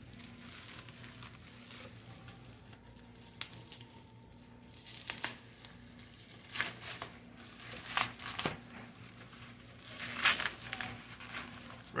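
Plastic packing, bubble wrap and tape, crinkling and tearing in short, irregular bursts as a parcel is unwrapped by hand. It is quiet for the first few seconds, and the crackles come more often toward the end.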